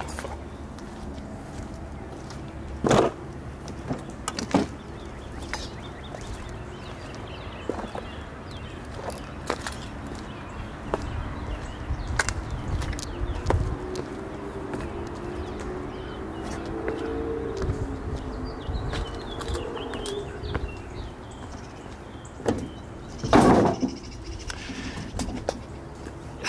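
Steady low outdoor rumble with scattered knocks and clicks of handling or steps on debris, louder a few seconds in and loudest near the end. A faint wavering drone, like a distant engine, comes and goes in the middle.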